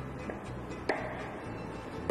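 Hammer striking a metal chisel into a wooden log to hollow out a drum body: one sharp strike with a short ring about a second in, and a few fainter taps, over soft background music.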